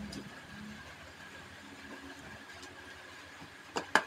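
Quiet room tone with a faint steady hum. Near the end come two sharp clicks close together as small plastic electronic parts, a relay module and an AA battery holder, are handled and set down on a hard floor.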